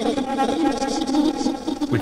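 A recorded voice counting in Japanese, run through the TipTop Audio Z DSP's Grain De Folie granular card on its 'Four Spreaded Grains' algorithm with the analog feedback path in use. The voice is broken into many overlapping grains that smear into a continuous, delay-like texture.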